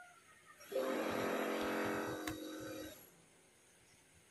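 A person yawning: a drawn-out, breathy voiced yawn that starts just under a second in and lasts about two seconds. Faint laptop keyboard taps lie beneath it.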